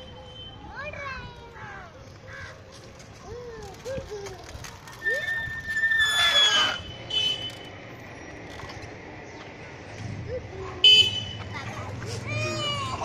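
Children's high voices calling out, with a loud, high, held tone about five to seven seconds in and a short, sharp burst near the end.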